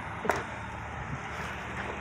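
Steady low rumble of traffic from a nearby highway, with one brief click about a third of a second in.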